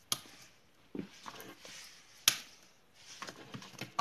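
Handling noise from a handheld phone camera: a few scattered light clicks and knocks, the sharpest a little past two seconds in.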